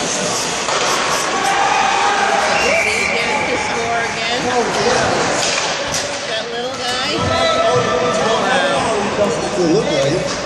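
Overlapping, indistinct voices of players and onlookers calling out in an indoor ice rink during a youth hockey game, with a few sharp knocks, the clearest about six seconds in.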